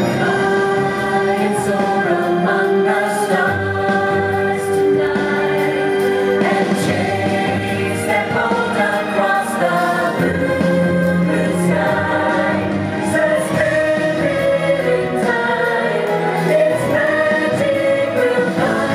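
Show music: a choir singing long, sustained chords over instrumental accompaniment, at a steady, full level.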